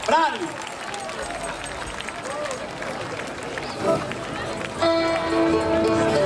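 Crowd noise with scattered voices at a live outdoor concert, with a short shout at the start. About five seconds in, the band comes in with steady held instrument notes and the music grows louder.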